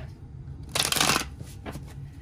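A deck of tarot cards being shuffled by hand: one quick burst of cards flicking together about a second in, then a few light card clicks.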